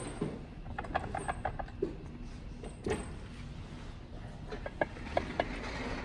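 Light clicks and knocks from handling the Onewheel's hub-motor wheel and setting it in a metal bench vise. There is a quick run of small clicks about a second in, one sharp click near the three-second mark, and a few more scattered clicks near the end.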